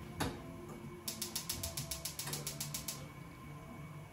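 Gas stove burner igniter clicking rapidly, about seven sharp clicks a second for two seconds as the burner is lit, after a single click from the control.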